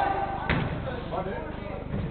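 One sharp thud of a football being kicked about half a second in, over players' voices in an echoing indoor sports hall.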